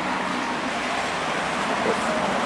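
Steady hum of road traffic passing.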